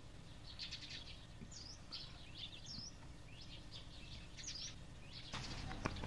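Faint bird chirps, a few short calls scattered through the middle, over low background hiss that rises slightly near the end.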